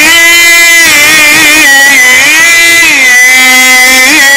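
A male Quran reciter's amplified voice holding one long, ornamented note in melodic mujawwad recitation, the pitch wavering and gliding, settling a little lower in the last second.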